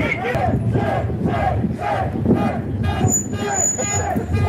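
A group of men chanting and shouting together in a quick, even rhythm, each short shout rising and falling in pitch. A thin, high, whistle-like tone sounds over them near the end.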